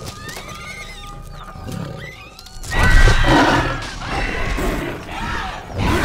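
Shrill, whinny-like creature cries from a film soundtrack: a few short gliding calls, then a much louder burst of screeching from about halfway in.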